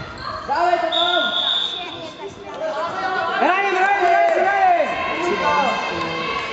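Voices shouting encouragement across an echoing sports hall during a futsal match, in two bursts of calls. A high steady tone sounds about a second in and lasts about a second and a half.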